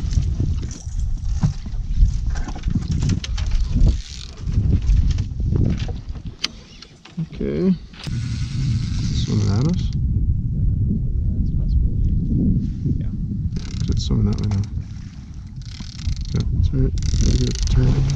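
Indistinct talk over a steady low rumble, with scattered short clicks.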